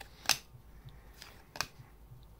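Panini trading cards being flipped through by hand: a few short, sharp card flicks. The loudest comes about a third of a second in, and two fainter ones follow around a second and a half in.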